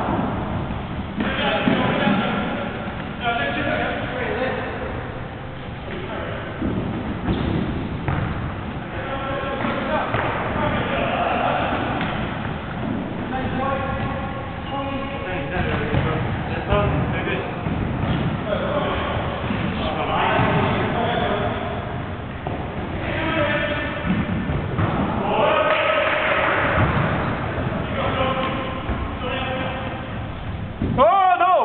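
An indoor football kicked and bouncing on a wooden sports-hall floor, thudding off feet and boards, with players' shouts throughout in a large hall.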